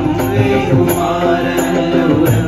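Men's group singing a Hindu devotional bhajan in chant-like unison, with small hand cymbals struck about twice a second and drum and keyboard accompaniment.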